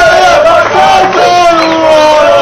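A group of men singing loudly together, holding long notes.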